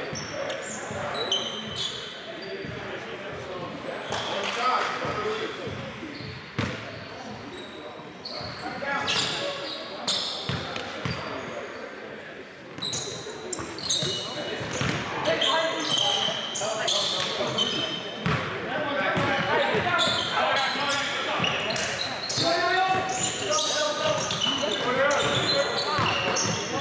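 Basketball game play on a hardwood gym court: a basketball bouncing repeatedly on the floor and short, high sneaker squeaks, with players' voices calling out in a large, echoing hall.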